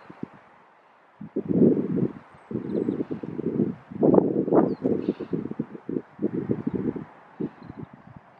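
Wind buffeting the camera microphone in irregular low gusts, with a short lull about a second in.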